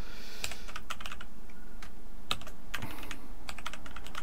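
Computer keyboard being typed on: a run of uneven key clicks.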